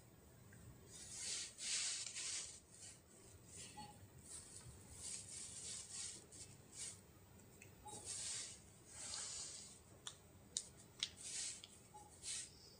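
Hands handling a Samsung smartphone: soft rustling swishes of fingers and sleeves against the phone, and a few sharp clicks near the end from fingers on the phone and its side keys.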